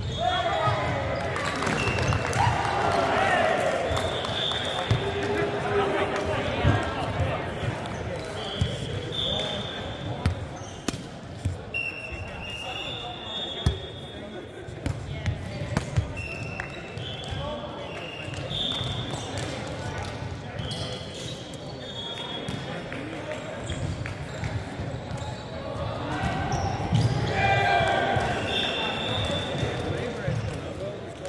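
Indoor volleyball rally on a wooden court: sharp slaps of hands and arms hitting the ball a few seconds apart, sneakers squeaking on the floor, and players shouting calls, echoing in a large hall. The shouting is loudest near the start and again near the end.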